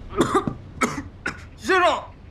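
A man coughing from smoke: several short, sharp coughs, then a longer voiced one near the end.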